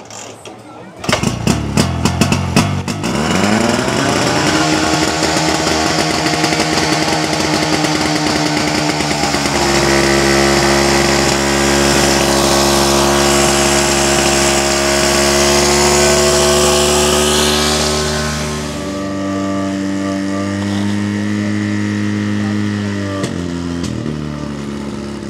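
Portable fire pump engine catching with a few uneven firings about a second in, then revving up and running hard and steady. Its speed steps up once more as the pump takes the load, and it drops back to a lower, steady speed near the end.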